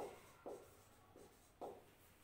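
Marker pen writing on a whiteboard: about four short, faint strokes.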